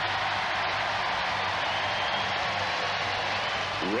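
Studio audience cheering and applauding, a steady wash of crowd noise.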